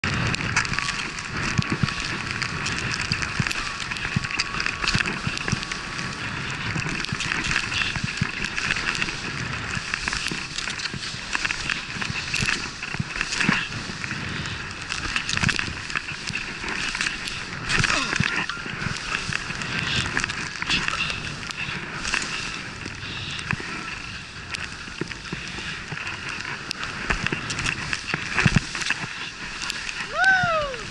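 Skis hissing and scraping over snow at speed, with wind rushing over the camera microphone and scattered short knocks and clatters from the skis and poles.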